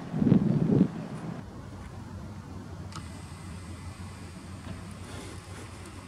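A loud, muffled rush of wind on the microphone for about the first second, then a steady low outdoor rumble like distant traffic. A faint, thin, high steady tone comes in about three seconds in.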